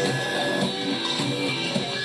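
Live rock band playing: electric guitar and drums with steady beats, recorded thin with no deep bass.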